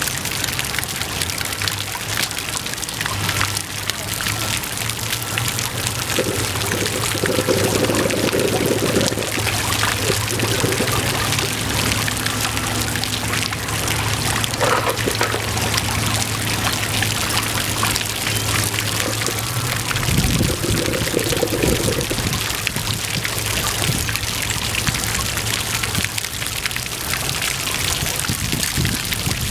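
Water jets of a paved fountain splashing down onto wet stone, a continuous rush of falling and trickling water, with a steady low hum underneath.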